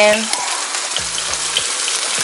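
Salmon fillets sizzling in hot oil in a frying pan: a steady hiss with small scattered pops and crackles.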